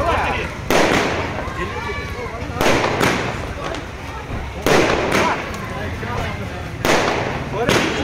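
Fireworks going off: four loud bangs about two seconds apart, each dying away in a short echo.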